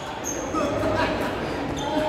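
Busy, echoing sports-hall background: voices and chatter from around the courts, with a couple of short knocks about a second in and near the end.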